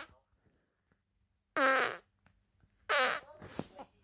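Two short, pitched fart sounds about a second apart, the second trailing off in a few faint sputters.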